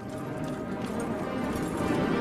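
Horse hooves clip-clopping as a horse-drawn carriage moves along, under background music that grows louder.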